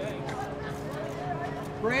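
Faint voices of people talking over a steady low hum, then a man says "great" near the end.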